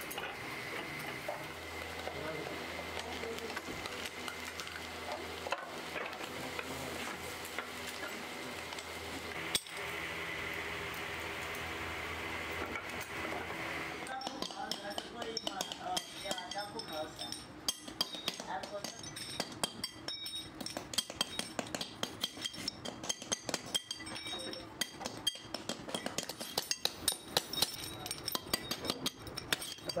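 A steady workshop hum with a faint high tone. Partway through it gives way to many quick, irregular metallic clinks and taps as aluminium brake-shoe castings are handled and worked with hand tools, growing louder toward the end.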